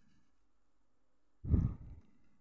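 Near silence broken, about one and a half seconds in, by one short, loud, low rumbling noise burst on the microphone, about half a second long.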